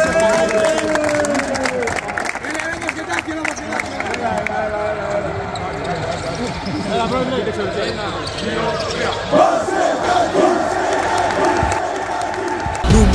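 Basketballs bouncing on a gym floor, a rapid scatter of thuds, under a crowd of men's voices talking and calling out, with a louder burst of voices about nine seconds in.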